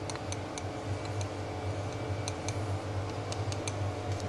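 Light, irregular clicks and ticks of metal and plastic handling as a piston is oiled over the bench, about ten in all, over a steady low workshop hum.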